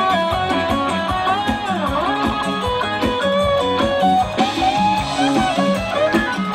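Live band music with an electric guitar playing the lead melody, its notes bending up and down, over bass and a steady drum beat.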